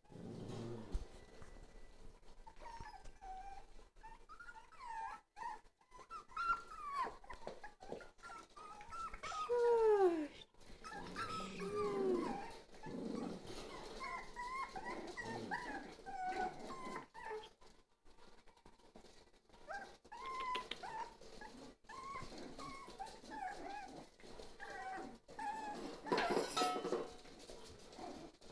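A litter of Jack Russell Terrier puppies whining and yipping in short high calls throughout. Louder drawn-out cries fall in pitch about ten seconds in and again shortly after.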